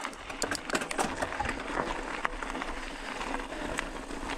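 Bicycle riding over a rocky gravel trail: tyres crunching on loose stones, with sharp clicks and rattles as the bike jolts over rocks, thickest in the first second or so.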